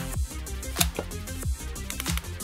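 Background electronic music with a steady beat and held bass notes.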